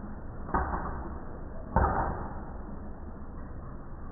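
An arowana splashing twice at the surface of its tank, the second splash bigger and louder, each a sudden slap of water that dies away quickly, over a steady low hum.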